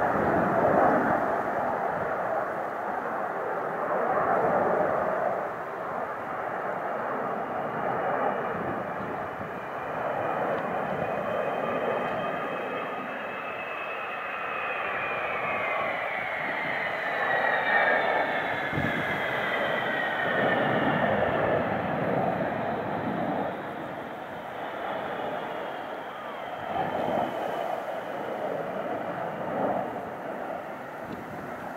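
Avro Vulcan XH558's four Rolls-Royce Olympus jet engines as the bomber flies past: a steady rush of jet noise. About halfway through, a high whine slides down in pitch as the aircraft passes.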